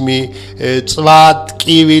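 Music with a voice singing held, chant-like notes.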